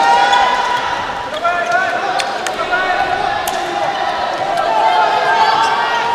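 Sneakers squeaking on an indoor volleyball court: short squeals, some held for about a second, over the steady murmur of the crowd in the hall, with a few sharp taps.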